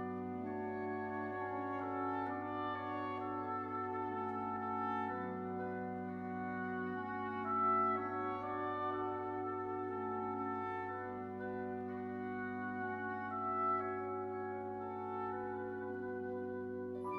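Symphony orchestra playing slow, sustained chords that change every second or two over a steadily held low note.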